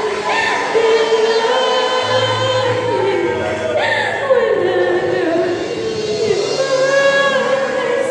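Mixed youth choir of young women and men singing a gospel song together into stage microphones, holding and sliding between long sung notes.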